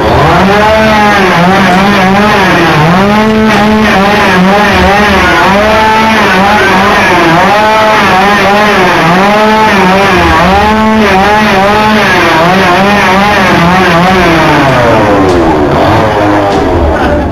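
A motor revving up and down over and over, its pitch rising and falling in arches about once a second. It runs loud and without a break.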